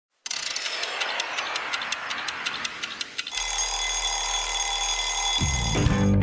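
Intro sound effect of a clock ticking rapidly, then an alarm clock ringing steadily from about halfway through. Guitar music starts near the end.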